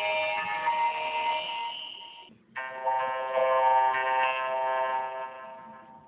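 The Windows XP startup chime, put through audio effects, heard as two pitched chords: the first cuts off suddenly a little over two seconds in, and after a brief gap a second chord sounds and fades out.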